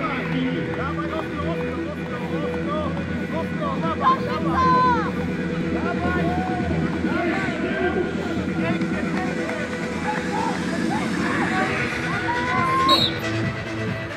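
Background music under a crowd's overlapping shouts and cheering.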